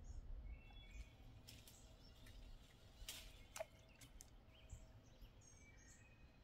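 Near silence: a few faint bird chirps over a low background hush, with a couple of brief soft clicks a little past the middle.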